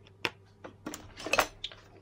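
A few small, sharp clicks and taps of a plastic Bluetooth helmet-headset button unit being handled and set down on a tabletop. The loudest cluster comes a little past halfway.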